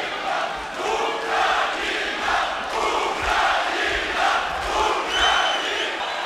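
Boxing arena crowd shouting in rhythmic, repeated swells like a chant, with a few low thuds partway through.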